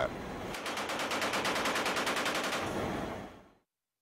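Machine gun firing one long, rapid, even burst from an aircraft's open ramp, fading out about three and a half seconds in.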